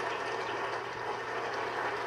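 Studio audience applauding, a steady wash of clapping, heard through a television's speaker.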